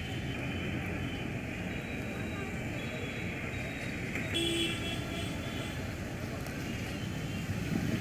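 Busy street-market background: a steady wash of traffic and crowd voices, with a short pitched tone, such as a vehicle horn, about four seconds in.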